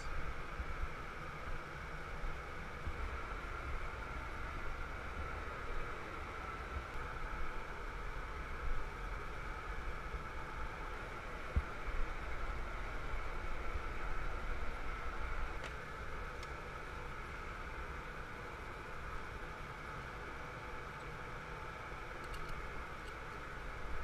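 Steady roar of a glassblowing studio's gas-fired furnace and glory-hole burners with ventilation fans: a low rumble under an even hiss.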